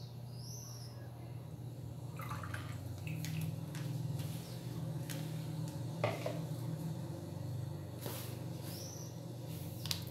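Cooking oil draining from a plastic funnel into a plastic bottle in faint drips, over a steady low hum, with a few light knocks.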